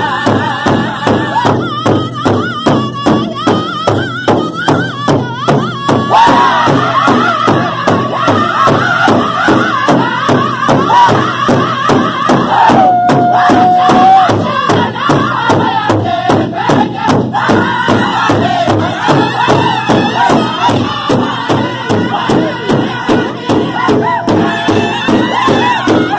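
Powwow drum group singing together while striking one large shared drum with drumsticks in a steady, even beat. One long held sung note comes about halfway through.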